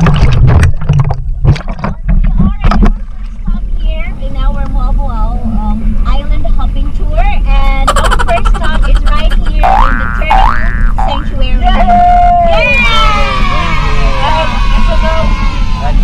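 People's voices calling and laughing at the water's surface, with water splashing against the camera in the first few seconds and a steady low rumble underneath.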